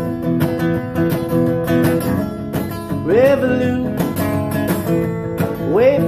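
Steel-string acoustic guitar played in a steady strummed rhythm. A short rising wordless vocal slide rises over it about three seconds in, and another near the end.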